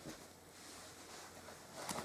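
Quiet room tone, with a faint, brief sound of movement near the end.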